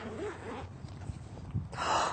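Fabric tote bag being opened and rummaged through by hand: soft rustling, with a louder swish just before the end.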